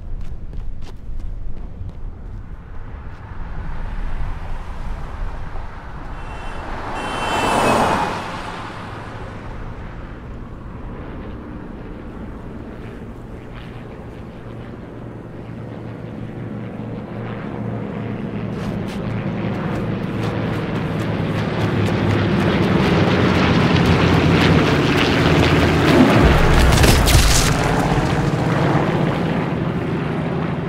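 Small crop-duster plane's propeller engine: a brief loud pass rises and falls about seven seconds in. Then the engine approaches from afar, growing steadily louder into a low diving pass overhead near the end, its pitch dropping as it goes by.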